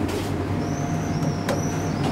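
Telescopic hydraulic elevator's machinery giving a steady low electric hum, with a faint high whine over it and a single sharp click about one and a half seconds in.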